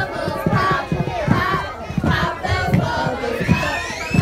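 A group of children and adults singing and calling out together, many voices overlapping at once.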